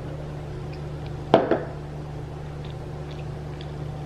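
A steady low electrical hum runs under the room's quiet, with one short sound about a second and a half in.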